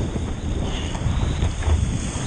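Wind buffeting the microphone of an action camera mounted on a surfboard's nose, an uneven low rumble, over the rush and spray of water as the board rides along a breaking wave.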